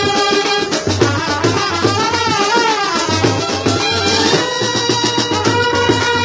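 Brass band playing a tune: trumpets, saxophones and clarinets carrying the melody over a steady drum beat.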